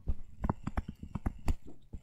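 Stylus tapping and scratching on a tablet as a word is handwritten: a quick, irregular run of sharp taps.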